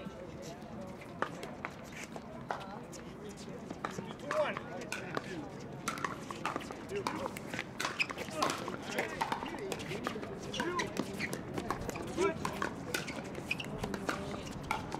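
Pickleball paddles striking a hollow plastic ball in a rally, a string of sharp pops, with more pops from neighbouring courts.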